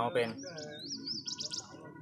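A bird singing: a wavering whistled phrase that rises and falls for about a second and a half, ending in a few quick clipped notes, over faint murmuring voices.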